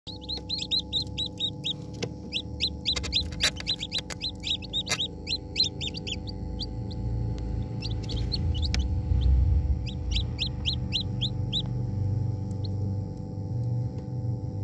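Hatching chicken chicks peeping: runs of short, high, falling peeps, several a second, with a pause in the middle. Under them a steady machine hum, and a few sharp clicks in the first five seconds.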